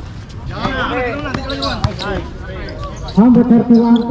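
Players shouting on an outdoor basketball court, several voices calling over one another, with a basketball bouncing on the hard court. About three seconds in, one loud voice holds a long shout.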